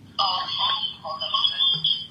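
A voice talking over a phone line's speaker, with a steady high-pitched whine underneath.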